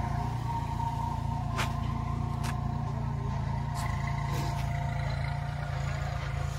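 Kubota B2441 compact tractor's three-cylinder diesel engine running steadily under load as it pulls a tined implement and a dragged plank across a field, with a few short clicks.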